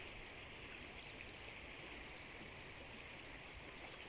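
Faint, steady rush of a flowing river, with one light tick about a second in.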